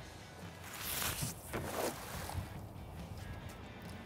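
A cast net landing on the lake surface about a second in: a brief hissing splash in two quick pulses. Music plays faintly underneath.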